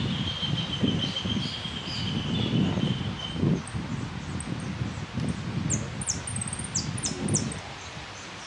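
Wind buffeting the microphone in uneven gusts, with a thin steady high tone fading out partway through. About six seconds in, a quick run of short, high, falling chirps from a saffron finch (jilguero).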